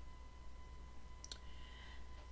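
A near-quiet pause with a faint steady electrical hum and a brief click a little past the middle.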